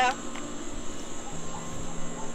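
Faint, steady chirring of insects in the garden, a thin high sound that runs on unchanged, with a faint low hum joining past the halfway point.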